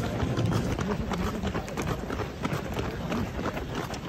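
Running footsteps of a pack of marathon runners on an asphalt road: quick, uneven shoe strikes from many feet at once.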